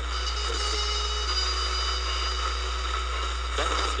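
A steady low hum and hiss with a thin held tone, like the noise bed of a broadcast recording; a talking voice comes back in near the end.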